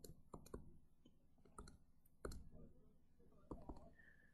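Faint, scattered clicks and taps of a stylus writing on a tablet surface, about half a dozen over a few seconds, against near silence.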